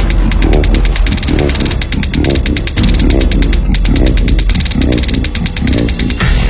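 Hard dubstep drop: a growling, vocal-like bass synth repeats its wobble about twice a second over heavy sub-bass and fast hi-hats. Near the end a hissing noise sweep takes over.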